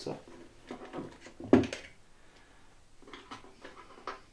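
A single sharp clack about one and a half seconds in: jigsaw blades and the jigsaw being handled on a wooden workbench.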